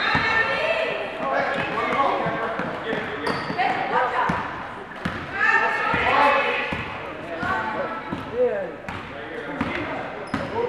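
Indistinct overlapping voices of players and spectators in a reverberant gym, with basketballs bouncing on the hardwood floor.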